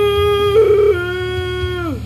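A man singing one long held note, with a brief rougher patch about half a second in, sliding down in pitch near the end.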